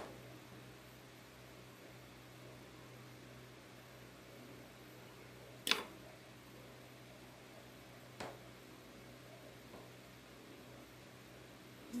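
Quiet room with a steady low hum, broken by a few light clicks, the sharpest about six seconds in and a weaker one about two seconds later: a small metal palette knife handled and set down on a work table.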